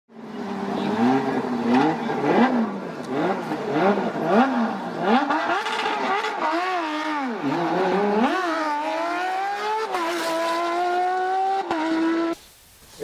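Racing car engine revving hard and pulling up through the gears: a run of short rises and falls in pitch, then longer climbs, the last rising steadily through the final few seconds.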